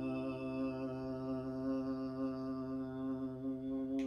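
A man holds one long, steady, low note, hummed or chanted, while the last strummed ukulele chord of the song rings out under it.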